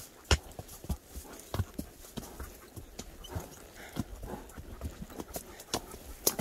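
A horse's hooves striking a dirt trail at a walk: uneven single knocks about once or twice a second, the first of them the loudest.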